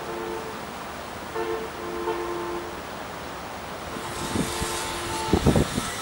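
Road traffic noise with several short two-note horn blasts and one longer horn later, then a few loud low thumps near the end.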